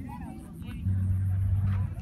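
Low, steady engine drone of a rally race vehicle on a dirt course, strongest for about a second just before the end, with brief voices of onlookers early on.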